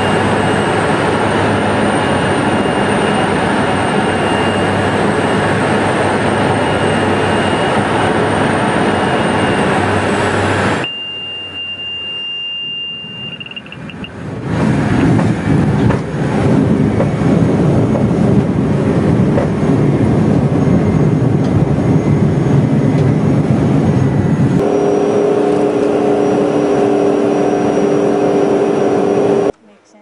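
Inside a small propeller plane's cabin: steady engine and propeller noise on the approach. After a dip about eleven seconds in, a high steady tone sounds for a couple of seconds, then loud rumbling as the plane rolls on a rough dirt airstrip, settling into a steadier engine hum near the end.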